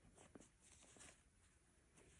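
Near silence: room tone with a few faint, short rustles and ticks of a hand moving over fabric.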